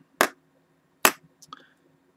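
Two short sharp clicks about a second apart, then a few fainter ticks: a cup of water being handled and set down on a small digital pocket scale.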